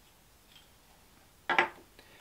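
Quiet room tone with a faint tick of metal safety-razor parts being handled about half a second in, then a brief voice sound near the end.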